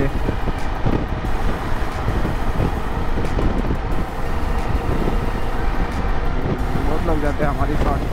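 Wind buffeting on the microphone over a motorcycle's engine and tyre noise, riding steadily at road speed.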